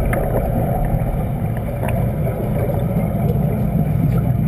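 Steady low underwater rumble and bubbling from a scuba diver's exhaled air bubbles, heard through an underwater camera, with a few faint clicks.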